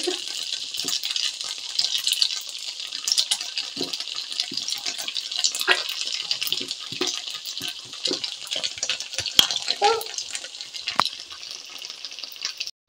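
Chopped onions and green peppers frying in oil in a pan: a steady sizzle with many small scattered pops as tomato sauce is poured over them.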